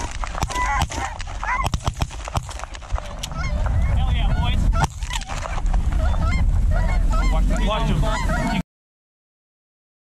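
A flock of Canada geese honking overhead while several shotguns fire a quick volley of shots in the first few seconds, with a last shot about five seconds in. Wind rumbles on the microphone in the second half, and the sound cuts off suddenly near the end.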